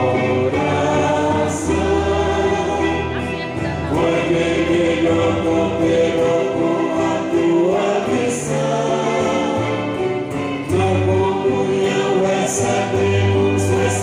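Choir singing a Catholic communion hymn, with held low bass notes underneath. The music cuts off suddenly at the very end.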